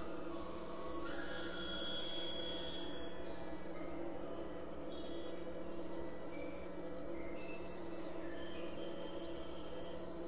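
Experimental electronic drone music: several steady low held tones, with thin high tones entering and fading above them, a few gliding slowly in pitch.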